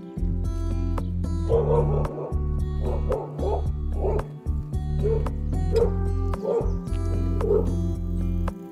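A dog barking repeatedly in short yips, about ten barks starting a second and a half in, over steady background music.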